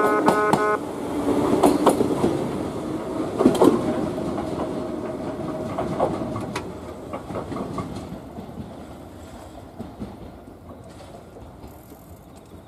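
Yoro Railway 600-series electric train rolling away, its wheels clacking over rail joints a few times, the rumble fading steadily into the distance.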